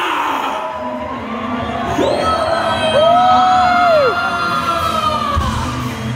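Live rock show music in a large hall, with the crowd cheering and whooping. A high held note bends up and falls back about three seconds in.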